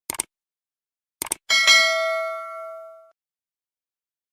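A few short clicks, then a single bell-like ding whose ring fades out over about a second and a half.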